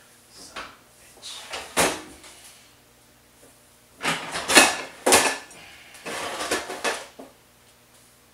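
Clatter of a kitchen range's bottom storage drawer being opened and rummaged through: a sharp clack about two seconds in, then a loud run of knocks and rattles in the middle and more rattling after it.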